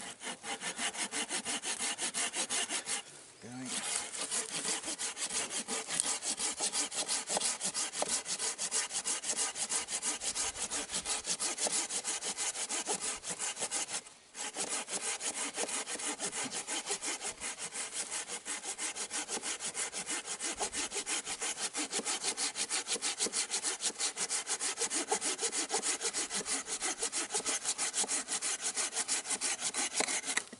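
Hand saw cutting through a dead, dry log with fast, steady back-and-forth strokes. It pauses briefly about three seconds in and again near the middle.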